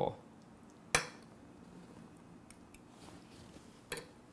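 A metal fork clinking against a ceramic plate while twirling pasta: one sharp clink about a second in, a couple of faint ticks, and another clink near the end.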